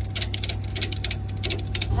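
Rapid, uneven metallic clicking from tie-down hardware, chain and ratchet strap, as a car is secured on a flatbed tow truck. Under it runs the steady low hum of the tow truck's idling engine.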